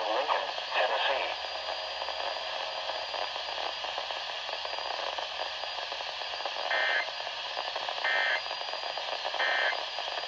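NOAA Weather Radio broadcast through a Midland weather radio's small speaker: the voice reading the tornado warning's county list ends about a second in, leaving a steady hiss. Near the end come three short, identical digital data bursts about 1.4 s apart, the EAS/SAME end-of-message code that closes the warning broadcast.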